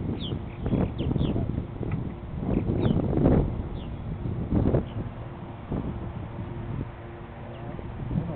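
Purple martins giving short, high, falling chirps, several in the first four seconds, over wind rumbling on the microphone and a few dull handling knocks.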